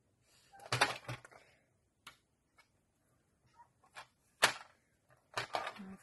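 Sliding paper trimmer's cutter head pushed along its rail, scraping and clicking as it cuts a very thin strip of paper, followed by scattered handling clicks and one sharp click about four and a half seconds in.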